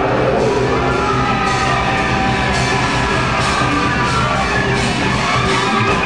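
Live heavy metal band playing: distorted electric guitar holding long notes over drums, with cymbal crashes roughly every half second to second.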